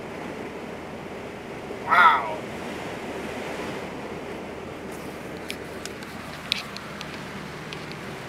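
Steady road and wind noise inside a moving car's cabin. A short vocal exclamation comes about two seconds in, and a few light clicks come later on.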